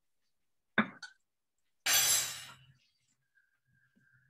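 A tin can of coconut milk clinking sharply against the rim of a red enamel pot as it is emptied in, with a lighter clink just after. About a second later comes a brief rushing noise that fades out.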